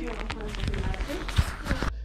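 Indistinct background voices with handheld handling noise and footsteps, a single thump about one and a half seconds in, over a steady low hum.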